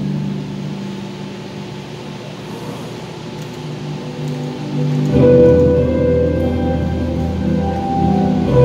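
Live band playing an instrumental passage: sustained chords that quiet down, then about five seconds in the band comes back in louder and fuller, with a deep bass and a repeating high note.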